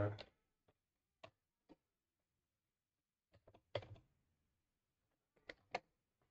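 A few separate computer keyboard keystrokes, single clicks and quick pairs, spread out with pauses between them.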